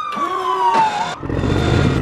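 A siren-like whistling tone gliding slowly down in pitch, ending about a second in, followed by a low vehicle-like rumble of a cartoon soundtrack.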